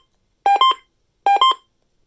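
Uniden BC370CRS scanner sounding its alert: short electronic beeps, each stepping from a lower note to a higher one, repeating a little faster than once a second. The beeps signal that the scanner has picked up an Emergency Alert System message.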